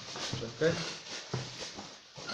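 Plastic bubble wrap rustling and crinkling as it is handled, with a few short muttered words.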